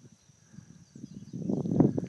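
Rustling and crackling of tall grass and brush close to the microphone as someone walks through the overgrown lot, growing louder in the second half. Faint bird chirps sound in the background.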